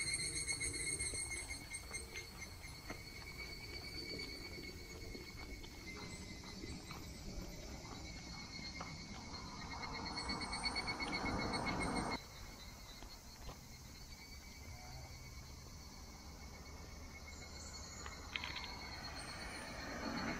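Cicadas calling in a steady, pulsing high-pitched chorus from the roadside trees. A rushing noise like a passing car swells a little past halfway and cuts off abruptly.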